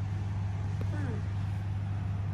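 A domestic cat meows once, a short call falling in pitch, about a second in, over a steady low hum.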